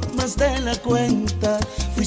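Salsa recording with the full band playing: a bass line of short held low notes under higher instrument lines, with no clear lead vocal.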